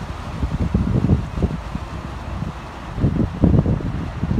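Wind buffeting the phone's microphone in irregular gusts, a low rumbling that swells about a second in and again near the end.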